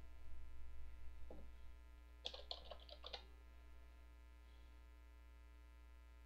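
A quick run of about six keystrokes on a computer keyboard, about two seconds in, over a steady low electrical hum.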